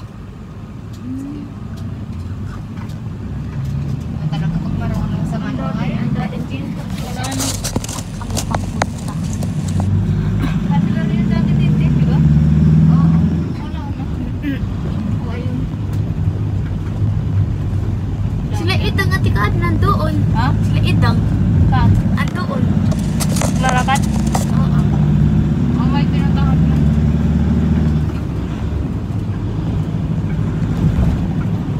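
Low rumble of road and engine noise inside a moving van's cabin, growing louder over the first dozen seconds as it picks up speed, then dropping off suddenly about halfway through. Voices come and go over it.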